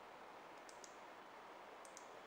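Two computer mouse clicks about a second apart, each a quick press-and-release pair of sharp ticks, over near silence with a faint steady hiss.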